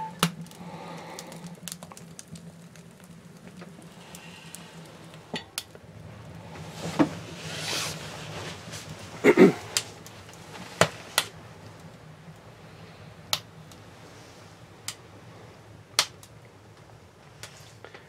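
A freshly lit tiny steel wood stove: its door latches shut with a metallic clink at the start, then scattered sharp pops and metallic ticks come from the fire and the heating stove, over a low steady hum.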